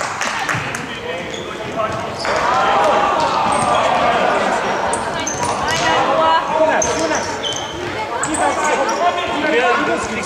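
Indoor football in a sports hall: children and spectators shouting and calling over the play, with sports shoes squeaking on the hall floor and the ball being kicked and bouncing.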